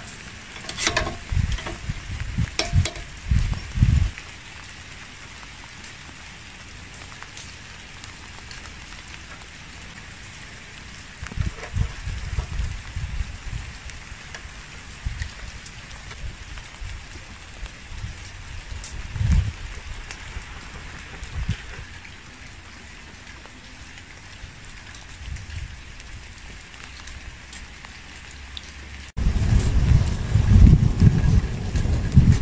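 Skewered lamb testicle kebabs sizzling over hot charcoal, a steady crackling hiss of juices dripping onto the coals. A few low thumps and sharp clicks come in the first four seconds, with more low bumps around twelve and nineteen seconds in.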